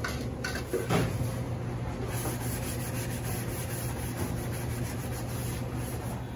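Hot boil-out water draining from a deep fryer's drain valve into a stainless stock pot, a steady rush with a couple of knocks near the start, over a steady low hum.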